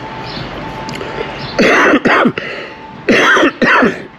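A man coughing in two short bouts of two coughs each, the first bout about one and a half seconds in and the second near the end.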